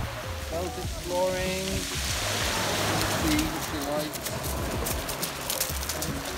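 Small waves breaking and washing up a shingle beach: a steady hiss of surf and water running over pebbles, swelling about two seconds in.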